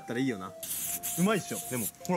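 Aerosol spray-paint can hissing in one burst of a little over a second, from about half a second in until near the end.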